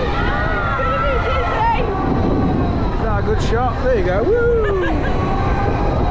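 Wind rushing over the microphone of a camera carried on a swinging, rotating air race ride. Wordless rising and falling yells from riders come through it, busiest a few seconds in.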